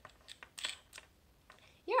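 Handling noise from a small shotgun microphone and its shoe mount: a handful of light clicks and a brief scrape in the first second as fingers work the mount.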